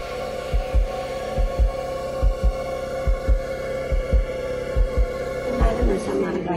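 Suspense heartbeat sound effect: a double low thump, lub-dub, about once every 0.85 seconds over a steady sustained drone, cutting off just before the end.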